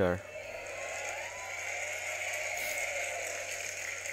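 Faint, distant man's speech in Indonesian played from a laptop speaker, under a steady hiss and low hum.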